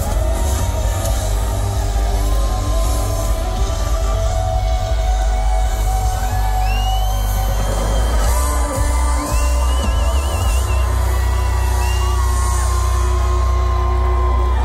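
Loud live music over an outdoor festival stage's sound system, heard from within the crowd: a heavy, steady bass with held and gliding melody lines above it, one of them wavering in pitch around the middle.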